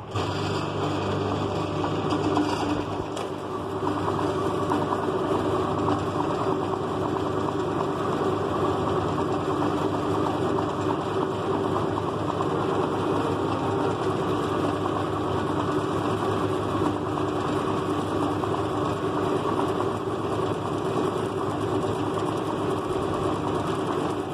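Electric motor of a metallographic lapping machine switched on and running steadily, its cloth-covered polishing disc spinning under a hand-held aluminium specimen during final polishing to a mirror finish. The hum comes on suddenly and holds at an even pitch.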